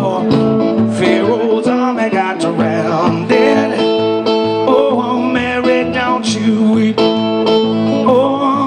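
Acoustic guitar strummed in a steady rhythm, with a man singing into the microphone over it.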